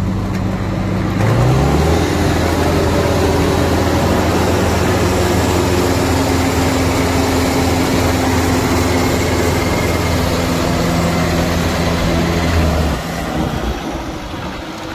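A 1981 Gleaner F2 combine's diesel engine is throttled up from idle about a second in. It runs steadily at high revs, then is throttled back down near the end.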